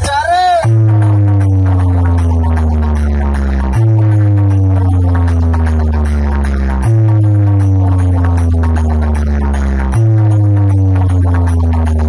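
Electronic bass track played loud through a large outdoor DJ speaker wall. A short warbling glide leads into a deep, sustained bass note with a descending sweep above it, and the bass note restarts about every three seconds.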